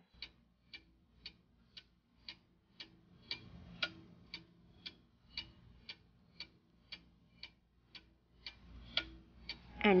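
Clock-tick sound effect marking a quiz countdown timer, ticking evenly about twice a second, with a faint low background underneath from about three seconds in.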